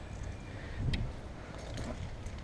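Handling of metal climbing-harness clip hardware: one light metallic click about a second in, over a low rumble of movement.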